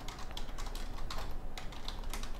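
Computer keyboard being typed on: a few irregular key clicks a second.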